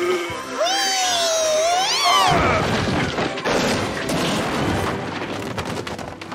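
Cartoon sound effects over music: a high gliding squeal, then about two seconds in a long crash and clatter of falling objects, books tumbling off shelves, that slowly dies away.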